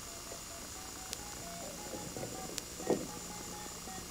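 Faint touch-tone beeps from a desk telephone's keypad: many short tones in quick succession as a number is dialed.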